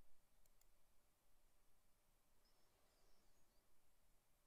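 Near silence: faint room tone, with two faint clicks of a computer mouse about half a second in.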